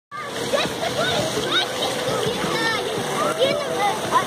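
Swimming-pool ambience: water splashing under a mix of bathers' voices, with many short high calls like children shouting.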